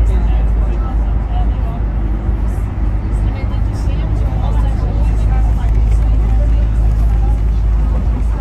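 Steady low engine and road rumble heard from inside a moving vehicle, with indistinct voices talking over it.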